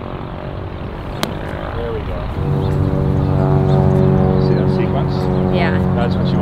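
A single crisp click of a golf club striking a ball about a second in. About two seconds in, a steady engine drone starts up and runs on, louder than the rest.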